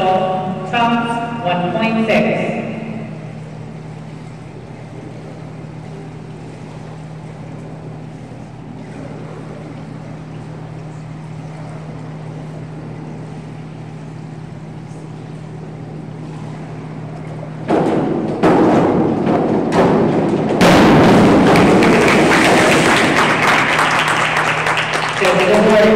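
A diving springboard thumps and rattles as the diver hurdles and takes off. A few seconds later comes the splash of her entry, followed by a long wash of crowd noise, clapping and cheering, that echoes in the pool hall.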